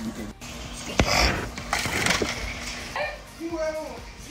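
A phone being handled and set down on a surface: a sharp knock about a second in with rustling handling noise, then a brief voice near the end.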